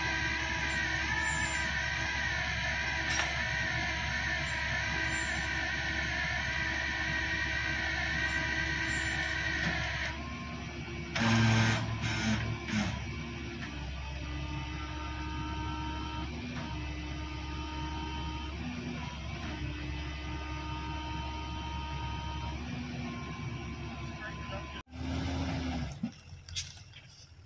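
Flatbed tow truck's engine and hydraulics running steadily with a whine that wavers in pitch as the tilted bed lets a heavy cottonwood log off, with a few louder knocks about eleven seconds in.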